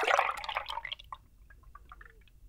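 Milk poured from a plastic jug into a glass mug: a loud splashing gush that fades within about a second into faint trickling and small drips.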